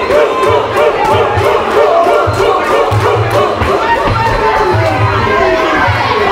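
Ringside crowd shouting and cheering the fighters during a Muay Thai bout, many voices overlapping throughout.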